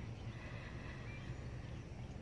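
Quiet outdoor ambience: a low, uneven rumble and a faint hiss, with one brief faint high note about a second in.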